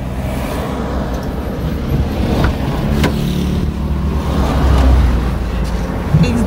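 A motor vehicle engine running with a steady low rumble, growing louder about five seconds in, with one sharp click about three seconds in.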